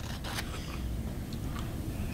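A few faint crunching and mouth sounds as an Oreo cookie is bitten and chewed, over a low steady room hum.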